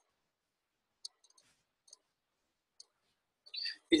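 Three faint computer mouse clicks, about a second apart, over near silence, then a brief soft noise just before the end.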